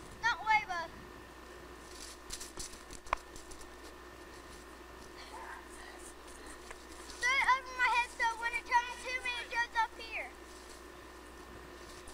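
A high-pitched voice giving short wordless cries, briefly at the start and again in a quick run of calls for about three seconds from about seven seconds in. A single sharp click comes about three seconds in.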